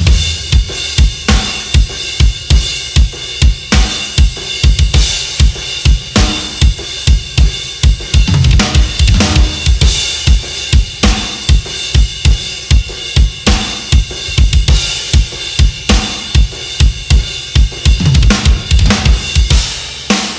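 DW drum kit with Meinl cymbals played hard in a metal drum part, heard alone without the band: steady bass drum strokes about three a second under snare hits and constant crash and hi-hat wash. The kick thickens into fast double-pedal runs near the start and again near the end.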